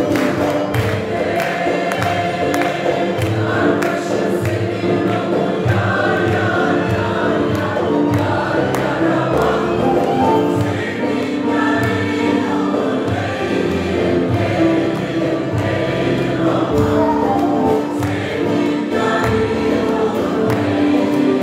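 A mixed choir of men and women singing a Turkish folk song (türkü) in unison with held notes, accompanied by bağlamas and other folk instruments.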